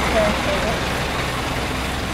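Street background noise: the steady low hum of an idling vehicle engine, with faint voices in the distance.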